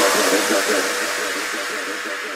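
Drum-and-bass track in a breakdown: the drums and bass have dropped out, leaving a hissing wash of noise with a faint held tone, slowly fading.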